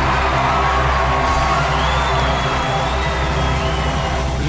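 Loud, steady trailer music with a crowd cheering over it.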